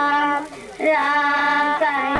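Young girls singing into microphones, holding long sustained notes, with a short break for breath about half a second in.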